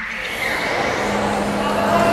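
A synthetic rising whoosh sound effect for a video intro transition. It climbs steadily in pitch, with a hissing rush that swells about half a second in.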